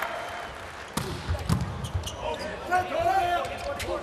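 Volleyball being struck during a rally in an arena: a sharp serve contact about a second in, another hit about half a second later, and a further hit near the end.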